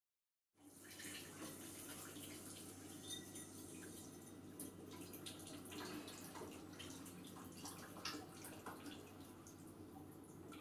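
Water running and dripping at a kitchen sink during washing up, with many small splashes and knocks; it starts suddenly about half a second in.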